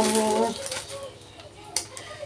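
A woman's drawn-out hesitation sound, "euh", lasting about half a second, then a quiet room with a single faint click near the end.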